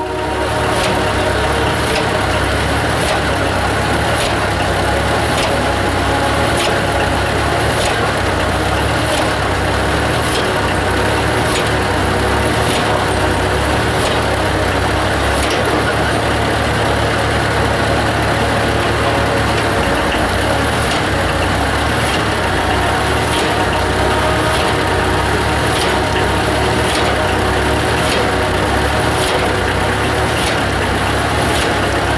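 Engine of a truck-mounted water-well drilling rig running steadily, with a sharp knock about once a second.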